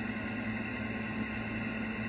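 A steady low hum with an even hiss under it, unchanging: background room tone.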